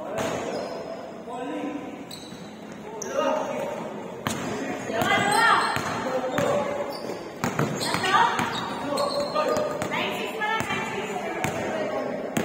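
Basketball bouncing repeatedly on a hardwood gym floor as players dribble, the thuds echoing around a large gym.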